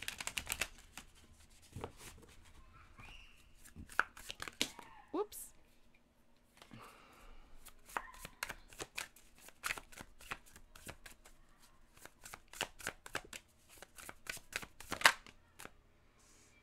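Tarot deck being shuffled by hand. A quick riffle of the two halves comes at the start, then after a pause a long run of rapid card clicks as the cards are shuffled from hand to hand, ending with one louder slap.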